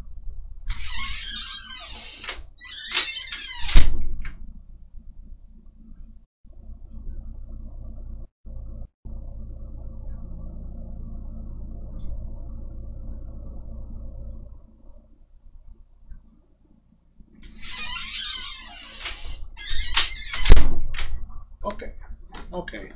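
A door opened and pulled shut, with rushing scrapes and a loud thud about four seconds in, then a steady low hum for about ten seconds, then the door again, shutting with a second loud thud near the end.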